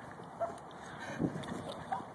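A man's short, faint whimpers and groans of pain, three brief sounds, from being hit in the leg by a golf ball.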